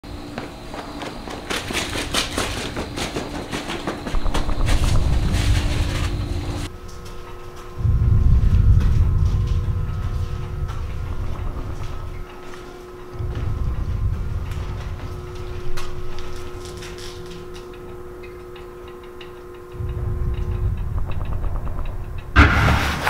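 Deep rumbling swells that rise and fade several times over a steady low hum. The first few seconds hold crackling noise with scattered clicks, which changes abruptly to the rumble and hum.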